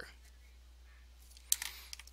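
A low steady hum, then about one and a half seconds in a pen is handled on paper: one sharp click followed by a brief scrape.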